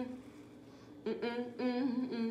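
A woman humming unaccompanied: a held note fades out at the start, then after a pause of about a second come a few short hummed notes.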